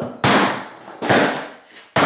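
A heavy hammer striking an iPod on a wooden workbench: sharp blows about a second apart, each with a short rattling decay, as the device is smashed.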